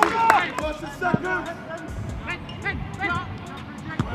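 Footballers shouting and calling to each other across an outdoor pitch, in short bursts near the start and again in the middle, with one sharp knock about a second in.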